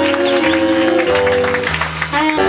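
Small jazz band playing: saxophones and trombone hold ensemble chords over upright bass, moving to a new chord every half second or so, with a brief lull near the end.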